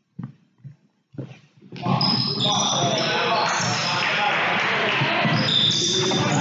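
A basketball bouncing a few times on a hardwood gym floor, each bounce a separate short thump. About two seconds in, loud gym noise takes over: shouting voices and shoes squeaking on the court as the players run.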